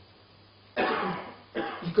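A man coughing close to a handheld microphone: one hard cough about three-quarters of a second in, then a second shorter one just after.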